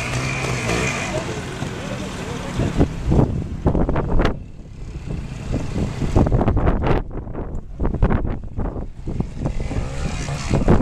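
Trials motorcycle engines running and blipped in short, irregular bursts, with low wind rumble on the microphone and voices in the background.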